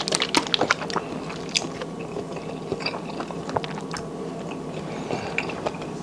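Close-miked small clicks and light taps as a small hot sauce bottle is handled and opened, a quick flurry in the first second and then scattered single clicks, as the bottle is tipped over a bowl of seafood-boil sauce.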